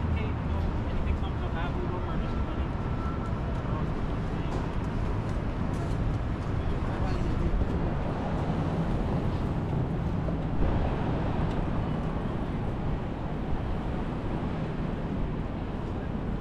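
Busy city street ambience: a steady low traffic rumble with voices of passing pedestrians, and a brief knock about ten and a half seconds in.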